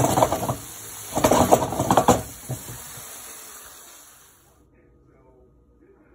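Chicken wings sizzling in hot grease in a frying pan, a steady hiss with two louder bursts, near the start and about a second and a half in. The sizzling cuts off suddenly about four and a half seconds in.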